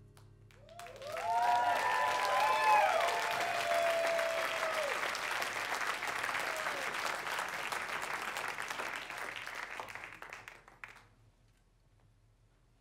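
Concert audience applauding and cheering at the end of a song, starting about a second in, with loud whoops over the clapping in the first few seconds. The applause thins and dies away near the end.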